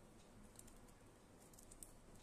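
Near silence with a few faint, light clicks and ticks of plastic basket-weaving strips being handled and pulled through the weave, clustered near the end.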